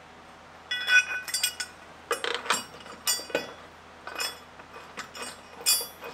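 Stainless steel bolt and washers clinking against a metal shallow-water anchor bracket as they are fitted. It starts with ringing clinks about a second in, then a string of sharp taps and knocks as the bracket is handled.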